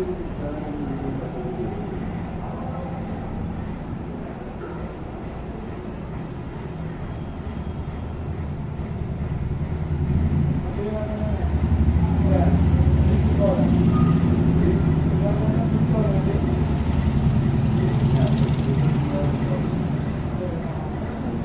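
A low vehicle engine rumble that grows louder about halfway through, with faint voices in the background.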